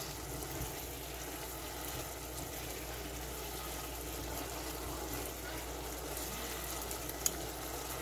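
Shrimp in a thick sauce simmering steadily in a saucepan as a spatula stirs through it, with a single short click near the end.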